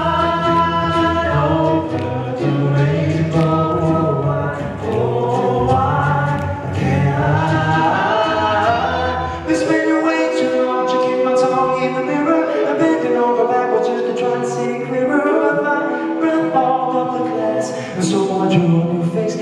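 Male a cappella group singing in close harmony into microphones, with no instruments. A low bass voice under the chords drops out about halfway through while the higher voices carry on, and short sharp clicks sound over the singing.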